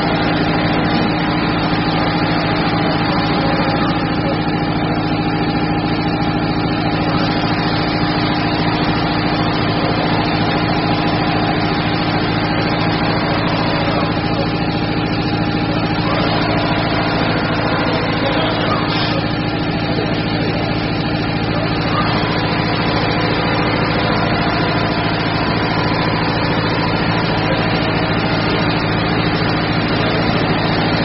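Richpeace computerized single-head quilting machine stitching: a steady motor hum with a rapid, even needle rhythm as the head sews across the quilt.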